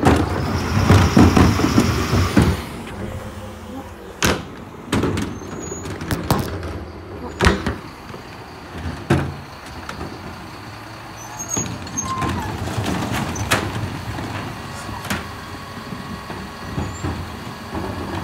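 Mercedes-Benz Econic bin lorry running during a recycling bin collection, with a louder stretch of machine noise for the first two and a half seconds. After it comes a steady low hum broken by a string of sharp, separate knocks and clanks, about one every one to two seconds.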